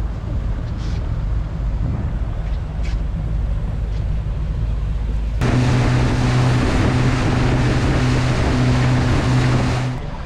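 Fishing boat's engine running at low speed with a low rumble. About halfway through there is an abrupt change to the boat under way at speed: a steady engine hum with the rush of water and wind.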